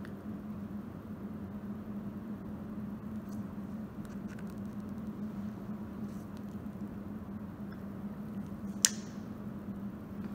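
Steady low room hum with faint handling ticks; near the end a single sharp click as a rubber stopper is pressed into the neck of a glass Erlenmeyer flask.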